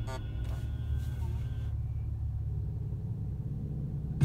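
Low steady rumble inside the cabin of a car stopped at a red light, with the last of the music fading out in the first second or two.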